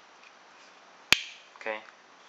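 A single sharp click from a Direware Solo Wharncliffe frame-lock flipper knife as its blade snaps shut, about a second in.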